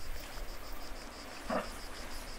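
An insect chirping in steady pulses, about six a second, over a low wind rumble. A brief voice-like sound comes about one and a half seconds in.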